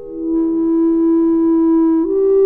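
B-flat clarinet holding one long, steady note that swells louder over the first half-second, with a fainter, higher note sustained alongside it.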